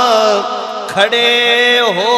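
A man chanting a devotional verse in long, drawn-out sung notes whose pitch wavers and bends. The voice drops away briefly just before the middle and comes back.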